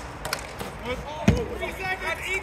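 Ball hockey play on a plastic sport court: scattered clacks of sticks and the ball, with one sharper knock just past the middle. Players' voices call out faintly in the background.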